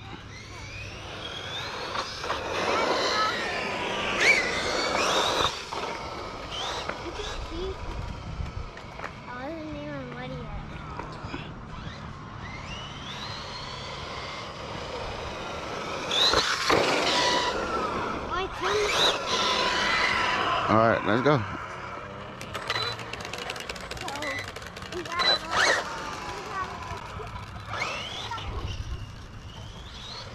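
Radio-controlled truck's electric motor whining, rising and falling in pitch again and again as it speeds up and slows down, with tyre noise on pavement.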